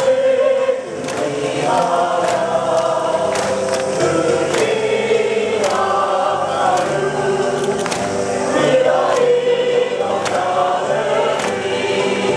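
A school song sung by a choir with instrumental accompaniment in slow sustained phrases, played over a ballpark's loudspeakers for the post-game line-up.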